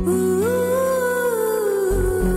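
Background score: a wordless hummed melody that rises about half a second in, holds, and slides down near the end, over a sustained drone.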